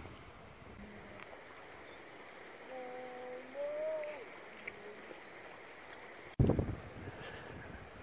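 A river running over rocks, a steady faint rush. About three seconds in there is a faint pitched call, held and then rising. Near the end a sudden low rumble starts.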